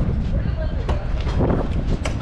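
Wind rumbling and buffeting on the microphone throughout. An exterior storage compartment's aluminum slam-latch door is unlatched and swung open, with a faint click or two.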